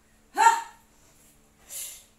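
A woman's short voiced grunt of effort about half a second in, then a quick breathy exhale near the end, as she works through a squat-to-plank burpee move.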